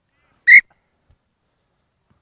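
Referee's whistle: one short, loud blast.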